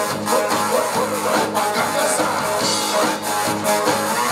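Upbeat band music with electric guitar and drums.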